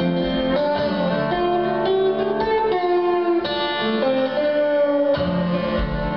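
A Mohan veena, a 20-string lap slide guitar, playing a blues riff: plucked notes that ring on and glide in pitch under the slide.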